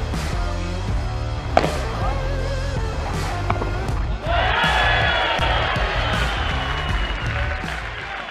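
Background music with the sharp pops of a padel ball struck by rackets and bouncing off the court and glass walls during a rally; one hit about one and a half seconds in is the loudest. From about four seconds in, a louder swell of crowd cheering rises as the point ends.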